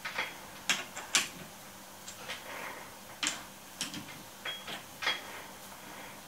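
Sharp metallic clicks and clinks of a T-handle chuck key working the jaw screws of a four-jaw lathe chuck, about ten at irregular intervals, a few with a brief high ring.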